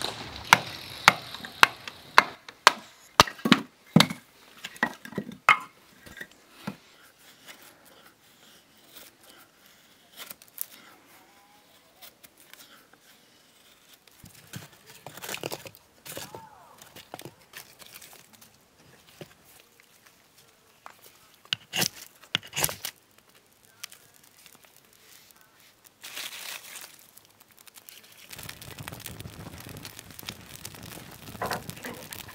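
Split kindling and dry wood shavings being handled to lay a campfire in a stone fire ring: a quick run of sharp knocks in the first few seconds, then scattered rustles and cracks. Near the end a steady rushing crackle comes in as the shavings catch.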